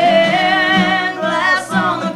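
A woman singing with vibrato over an acoustic guitar, in a live two-person acoustic performance.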